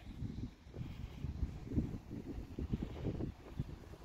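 Wind buffeting the microphone: an irregular, gusty low rumble with no steady tone.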